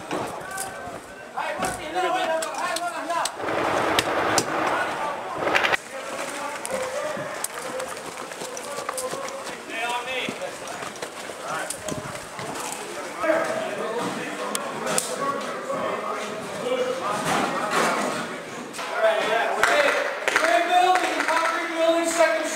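Men's voices calling and shouting, too indistinct to make out, with a few sharp impacts in the first six seconds.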